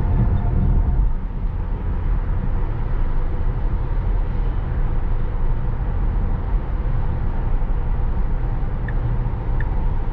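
Road and tyre noise inside a Tesla Model S Plaid's cabin at highway speed: a steady low rumble with no engine note. Faint, evenly spaced ticks come in near the end.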